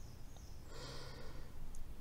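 A woman narrator drawing a breath: a soft, breathy in-breath lasting under a second, near the middle of a pause in her reading.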